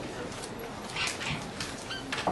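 Whiteboard marker squeaking against the board in a few short strokes as someone writes, the clearest about a second in and just before the end.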